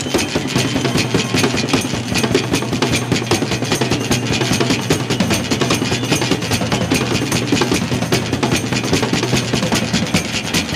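Live band playing an instrumental passage with fast, busy drumming on a drum kit, hits coming many times a second over a held low note.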